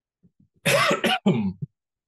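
A man coughing hard, two coughs in quick succession with a short third catch, starting about half a second in; a few faint clicks come just before.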